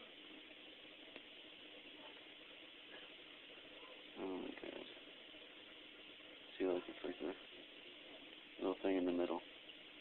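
A person's voice in three short bursts, about four, six and a half, and nine seconds in, over a faint steady hiss.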